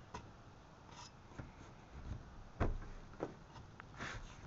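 A few faint knocks and scrapes, the loudest about two and a half seconds in: a person climbing up onto a car's roof.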